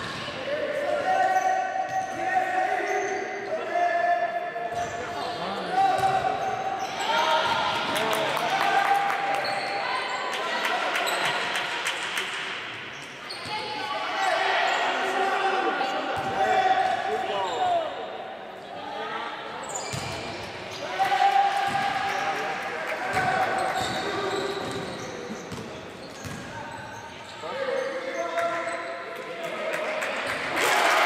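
A basketball being dribbled on a sports-hall court, with players' and spectators' indistinct shouts and calls echoing through the hall.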